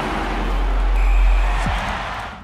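Logo sting for an animated closing sequence: a deep, steady bass rumble under a noisy whoosh, with a sweep falling in pitch near the end.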